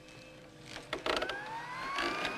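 A film sound effect of a spinal traction machine: a steady motor hum, a burst of clicks about a second in as its control is turned up, then a whine rising in pitch as the machine speeds up to a dangerous setting.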